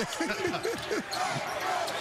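A basketball being dribbled on a hardwood court over steady arena crowd noise, with men laughing over it.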